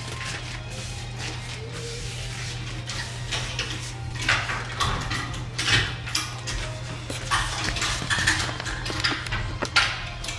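Irregular rustling and light clinks as clothes and the camera are handled, starting about four seconds in and loudest near the end, over faint background music and a steady low hum.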